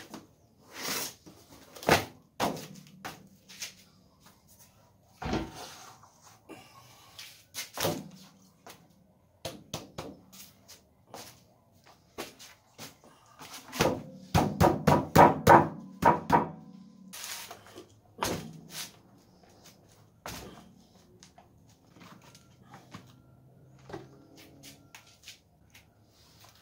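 Gloved hands slapping and knocking an upturned plastic basin to free a set block of homemade soap, with scattered thumps of cardboard and the basin being handled. The loudest part is a quick run of hollow knocks about fourteen to seventeen seconds in.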